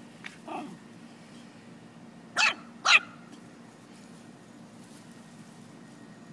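A small dog playing: a short yelp that falls in pitch, then two sharp, high play barks about half a second apart.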